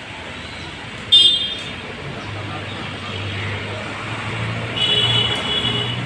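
Vehicle horns in street traffic: a short, loud high-pitched honk about a second in, then a longer horn lasting about a second near the end, over a steady wash of traffic noise.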